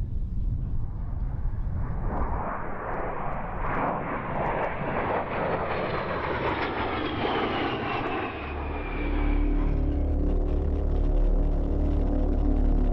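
A low-flying jet aircraft passes overhead. Its noise swells over a few seconds and then fades as its whine falls in pitch. Near the end a steady low hum takes over.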